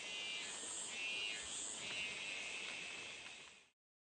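Faint, high-pitched chirring ambience with a warbling, repeating pattern. It fades out to silence shortly before the end.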